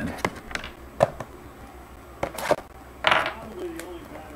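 Shrink-wrapped trading-card boxes being handled: a run of sharp clicks and taps, the loudest about a second in, then a short crinkly rustle of plastic and cardboard about three seconds in.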